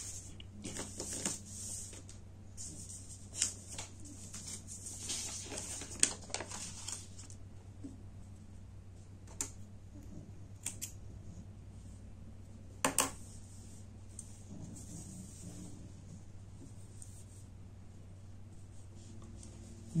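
White fabric and paper pattern pieces rustling as they are handled and laid out on a sewing table, with a few sharp clicks and taps, the loudest about thirteen seconds in. A low steady hum runs underneath.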